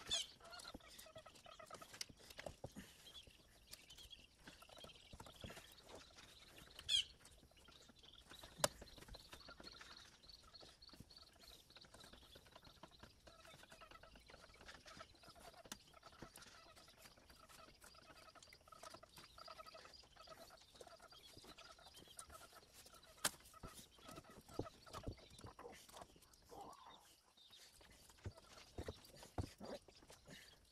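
Very quiet: faint small clicks and ticks of a knife cutting meat loose from a snapping turtle's hide, with a faint animal call repeating over and over through the middle stretch.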